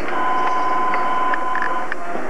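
A steady high whine that holds one pitch for nearly two seconds, with fainter tones above and below it, starting and stopping sharply over constant tape hiss.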